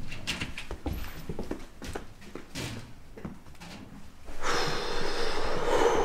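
A few light knocks and shuffles, then about four seconds in a man's long, heavy breathy exhale, a loud sigh that is the loudest thing here.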